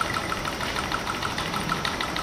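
Small Stirling engine running on an alcohol burner, giving a rapid, even mechanical ticking.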